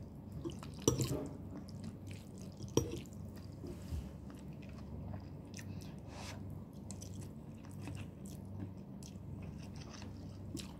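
A person eating noodles: chewing, with sharp clicks of a metal fork against the bowl, the loudest about one and three seconds in.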